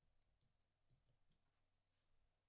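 Near silence, with a few faint computer clicks from the keyboard and mouse in use during the first second and a half.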